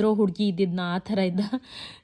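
Speech only: one voice talking, with a short breathy hiss near the end.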